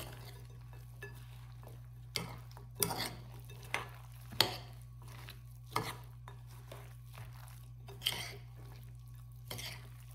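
A utensil stirring shredded potatoes, broccoli and cheese sauce in a large glass mixing bowl, knocking and scraping against the glass in about eight irregular clinks, the loudest about four seconds in. A steady low hum runs underneath.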